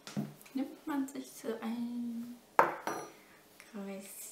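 A sharp metallic clink about two and a half seconds in, from a small metal pastry tool put down on the pastry mat, briefly ringing. Short stretches of a woman's voice come before and after it.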